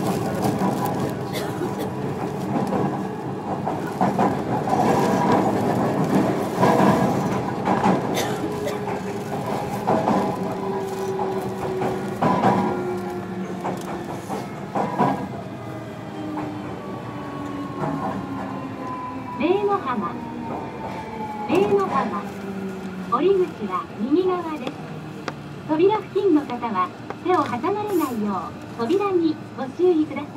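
Onboard running sound of a JR Kyushu 305 series electric train: steady wheel and motor noise with rail clatter, and a motor whine that falls slowly in pitch in the middle part as the train slows.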